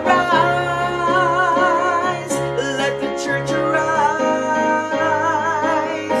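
A woman sings a worship song with wavering, held notes, accompanying herself on a Roland digital piano.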